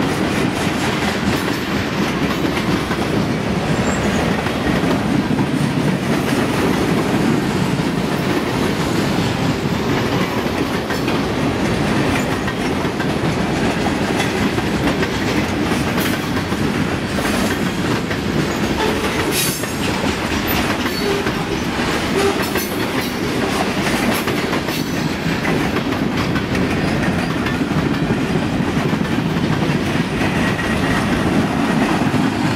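Freight cars rolling past at close range: a steady rumble of steel wheels with a rhythmic clickety-clack over the rail joints. There are a few brief high-pitched wheel screeches a little past the middle.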